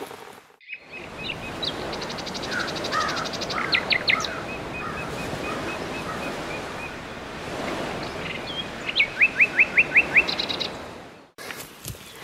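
Several songbirds singing over a steady rushing background noise, with a fast trill early on and a run of about six quick down-slurred notes near the end; the sound starts after a brief drop-out and cuts off abruptly shortly before the end.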